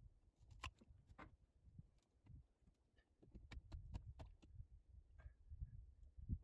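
Near silence: faint scattered clicks and light knocks from handling work on an old wooden log dock, bunched together from about three to four and a half seconds in, over a low rumble.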